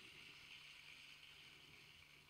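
Near silence: room tone, with a faint steady hiss and a low hum.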